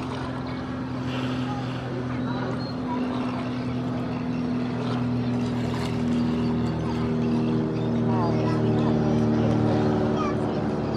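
Motorboat engine running steadily with a low hum; about six seconds in a second, higher engine tone joins and the sound grows louder.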